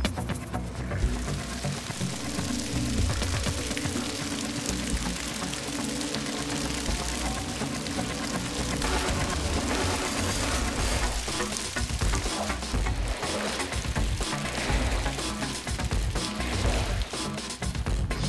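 Hot water gushing from the drain of a steel tub and splashing across a Ucrete resin floor as it is pushed about with a squeegee, under background music.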